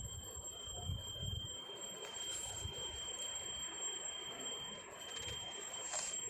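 Faint background noise with a steady high-pitched whine, and a low rumble that fades out about one and a half seconds in.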